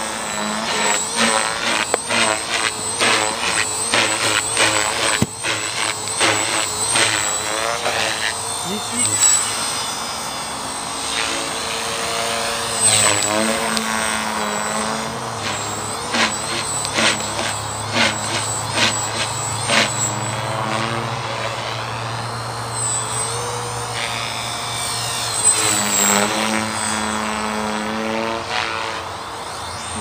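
Align T-Rex 450 Pro electric flybarless RC helicopter flying aerobatics: the whine of its motor and rotors rises and falls in pitch as it manoeuvres, with rapid pulsing in the first several seconds and again about halfway through.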